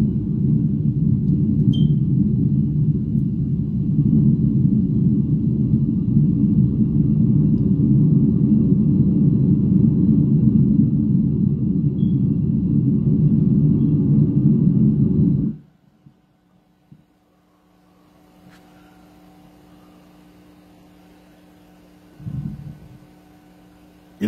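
Loud, steady low rumble of a hand pressed against the phone and rubbing over its microphone. It cuts off suddenly about fifteen seconds in, leaving a faint steady hum and one short low thump near the end.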